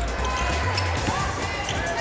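A basketball being dribbled on a hardwood court, with arena background noise and music.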